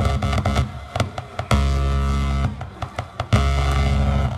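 Electronic noise from homemade synth circuits played through a small mixer and PA: a fast stuttering pulse, then a steady buzzing drone that cuts in about one and a half seconds in, drops away, and comes back loud near the end.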